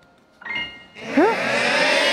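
A group of voices breaking into a loud, drawn-out "ooh" about a second in, after a brief hush.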